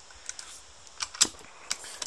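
A few small mechanical clicks from a bolt-action rifle's two-stage trigger being worked, with one sharper click a little over a second in.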